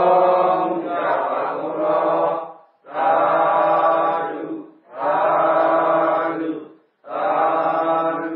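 Buddhist chanting: a voice intoning in long phrases held on a level pitch, four phrases with short breaths between them.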